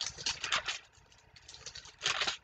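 Thin Bible pages being turned: quick rustles and flicks of paper, densest in the first second and then fainter scattered ticks, as the place in Luke is found.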